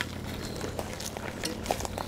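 Footsteps on a woodland path of wood chips and dry leaf litter: a few soft crunches and clicks over a faint steady low hum.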